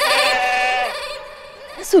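A goat bleating once: a long, quavering bleat that trails off after about a second.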